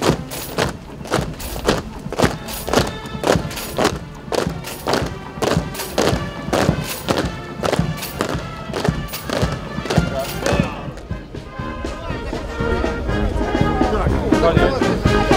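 Military brass band playing a march over the even tramp of a marching column, about two and a half beats a second. The beat stops about ten seconds in, leaving the band and voices.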